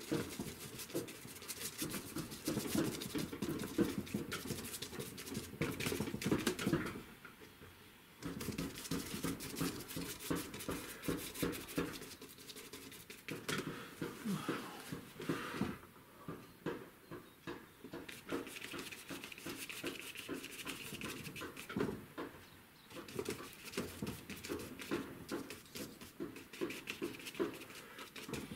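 Stiff bristle brush dabbing and scrubbing oil paint onto primed paper: a rapid run of short, scratchy taps with a few brief pauses.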